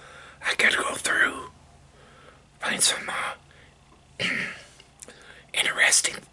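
A man whispering close to the microphone in short phrases with pauses between them.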